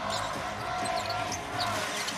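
Basketball being dribbled on a hardwood arena court over arena crowd noise, with a steady held tone in the background.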